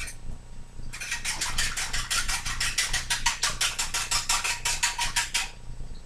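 Pancake batter being beaten briskly in a bowl, a utensil clicking against the bowl in a fast, even rhythm of about six strokes a second that starts about a second in and stops just before the end.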